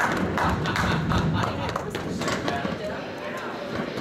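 Voices in an indoor roller hockey rink, with many scattered sharp knocks and clacks throughout.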